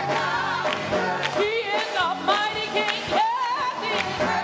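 Gospel choir singing with a band, steady bass notes under the voices, and hands clapping in time with the beat.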